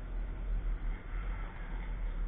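Wind buffeting a trackside camera microphone, a low rumble that swells and dips rapidly, over the faint sound of a car running somewhere on the track.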